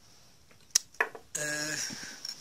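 Two light metallic clicks about a quarter-second apart as small steel machining tools are handled on a bench. They are followed by a drawn-out spoken "a".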